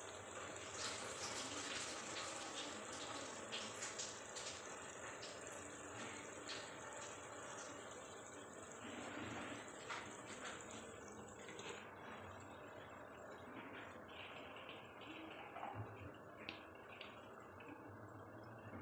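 Tomato and spice masala bubbling and sizzling in oil in a pot, with frequent small pops and crackles that thin out after about twelve seconds. The masala is fully fried, with the oil separating at the edges.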